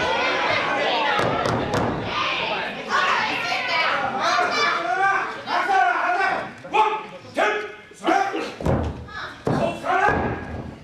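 A wrestler being slammed onto the wrestling ring's mat: a heavy thud about seven seconds in, followed by several more thuds, under continual shouting voices.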